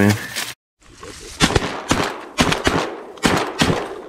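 Shotgun shots fired in quick succession at ducks, about six sharp blasts over two and a half seconds, starting about a second and a half in.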